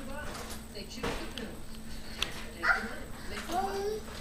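A toddler's short vocal sounds: a brief call a little before three seconds in, then a longer one near the end that rises in pitch. A single light click comes just before them.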